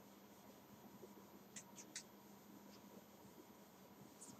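Near silence, with faint short squeaks of a whiteboard duster wiping the board: three quick strokes close together a little past halfway through, over a low steady hum.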